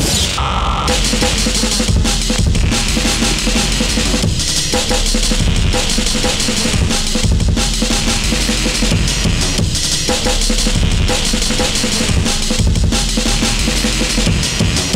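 Drum-and-bass dance track playing loud and steady: fast, busy breakbeat drums over a heavy bass line.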